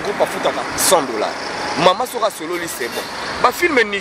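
A motor vehicle passing close by, its running noise under a man talking.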